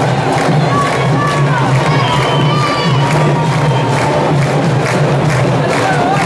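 Candombe drumming by a comparsa's drum line with a crowd cheering and shouting over it; drawn-out shouts and calls rise and fall above dense, rapid drum strokes.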